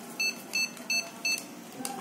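Verifone VX675 card-payment terminal beeping four times in quick succession, short high beeps about three a second, while it verifies its files.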